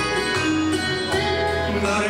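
Instrumental backing music for a sung performance, with steady sustained notes and plucked strings between vocal lines.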